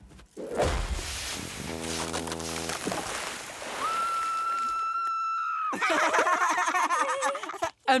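Cartoon sound effects: a hissing noise with a low hum under it, then a steady high whistle, like a kettle, lasting about two seconds. About six seconds in, a high, warbling voice-like sound follows.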